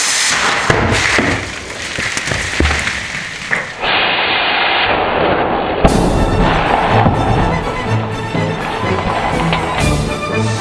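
A plastic bottle of fermented passion fruit pulp, swollen hard with gas, bursts open as its cap is twisted: a sudden loud pop and then about four seconds of rushing spray. Music with a steady beat takes over about six seconds in.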